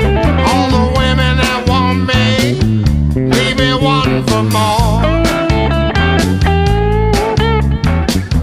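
Blues trio playing an instrumental passage: electric guitar lead lines with string bends and vibrato over electric bass and drums.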